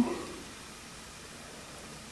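Faint, steady background hiss of room tone.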